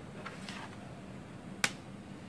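Plastic laptop bottom-cover clip snapping loose once as the cover is pried open along its seam, after some light scraping at the edge.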